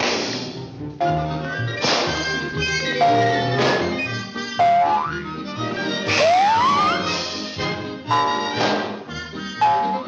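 Orchestral cartoon score playing short stabbing phrases, broken by several sharp slapstick hits. A rising sliding glide comes about six seconds in.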